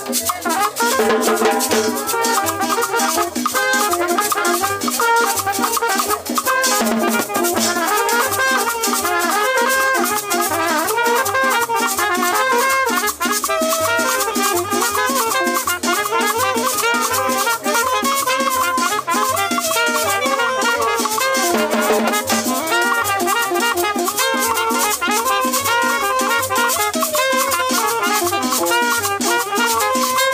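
Live cumbia band playing a dance number: an upright bass walks under a melody, with drums and a metal scraper (güira) keeping a quick, steady scraped rhythm.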